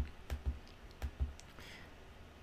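Computer mouse button clicking, several quick clicks in the first second and a half, clicking the back arrow of a chart program to step the date back a day at a time.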